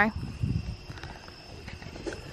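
Insects, crickets, chirping steadily in the background, under low rustling and thumping from footsteps and from the camera being handled while walking, strongest in the first half second.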